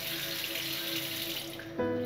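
Bathroom tap running into a washbasin, stopping about one and a half seconds in, under soft background music with held tones; a new music chord comes in near the end.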